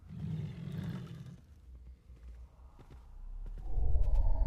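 A rough, low, animal-like roar lasting about a second and a half, followed by a low rumble that builds toward the end.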